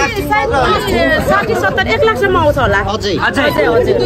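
Speech only: a woman talking, with other people chattering around her.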